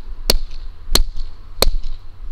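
Sharp hand claps repeating at a steady beat, about one every two-thirds of a second, three of them.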